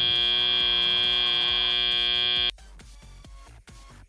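FIRST Robotics Competition field's end-of-match buzzer: one loud, steady electronic tone held for about two and a half seconds, then cut off suddenly, marking the end of the match. Quieter background music follows.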